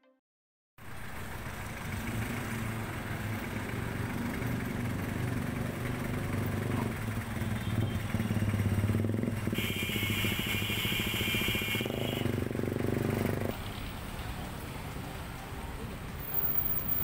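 Street traffic: cars and motorcycles running and idling close by, with a steady low engine hum. The sound starts suddenly about a second in, and a high steady tone sounds for about two seconds near the middle.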